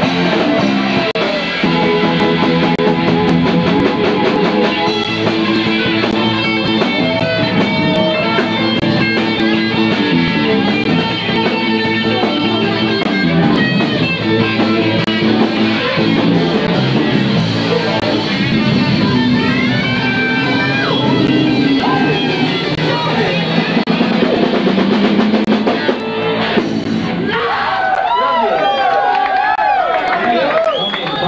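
Live rock band playing loudly on electric guitar, bass guitar and drum kit. The playing stops shortly before the end, giving way to voices talking and calling out.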